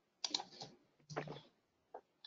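Faint typing on a computer keyboard: a few separate clicks and taps spread over two seconds.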